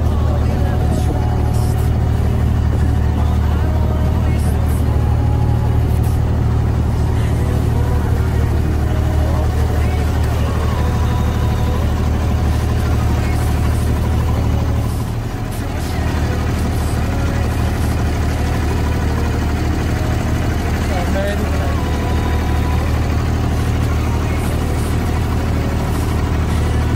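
A passenger boat's engine running with a steady low drone underfoot, easing briefly about halfway through, under the chatter of passengers on deck.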